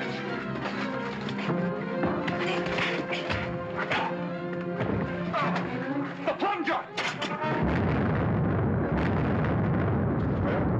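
Orchestral film-serial music plays under a fistfight, with blows and scuffling. About seven and a half seconds in, an explosion in the mine sets off a dense, steady rumble that keeps going.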